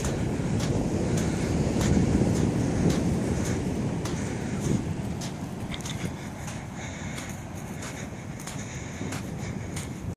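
Wind rumbling on the microphone, strongest two to three seconds in and easing off in the second half, with faint scattered crackles and ticks.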